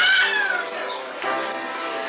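A baby's short, high squeal that falls in pitch right at the start, over background acoustic guitar music.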